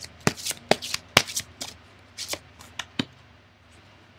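A deck of oracle cards shuffled by hand: a quick, irregular run of sharp card slaps, several a second. It stops about three seconds in.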